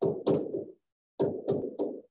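A stylus knocking and tapping on a tablet screen as letters are handwritten: about five sharp knocks in two uneven clusters, each dying away quickly.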